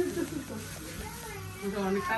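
A voice in a drawn-out, sliding tone, quieter than the talk around it, over a steady low hum.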